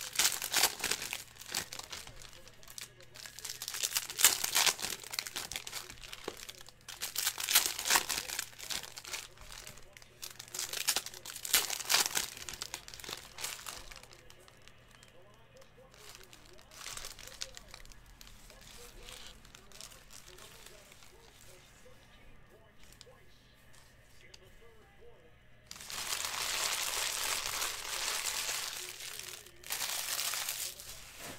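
2019 Panini Prizm baseball cards being handled and sorted into stacks: rustling and sliding card stock in bursts of a few seconds each, quieter through the middle, then a longer steady rustle near the end.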